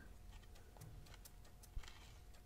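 Near silence, with faint ticks and one small click near the end from the filling button of a button-filler fountain pen being pressed. The pen is empty, so no ink comes out.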